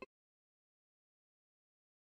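Dead digital silence: the audio cuts out completely just after a brief click at the very start.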